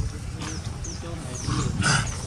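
Short high-pitched chirps from an animal, repeating about once a second over a low outdoor rumble, with a louder brief call near the end.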